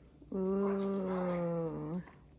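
A person's long, drawn-out wordless vocal sound, held on one pitch for about a second and a half and sliding slightly lower, with a quick upward turn as it ends.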